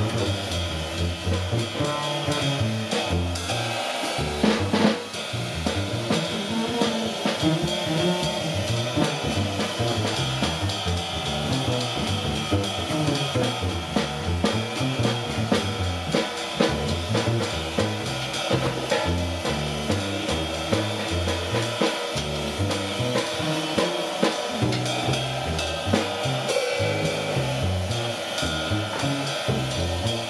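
Live jazz trio playing: a plucked upright bass moves note by note in the low range under a drum kit played with sticks on cymbals and drums.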